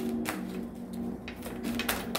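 A deck of oracle cards being shuffled by hand: sharp clicks and snaps of the cards, a few of them, including one about a second in and two near the end, over faint background music.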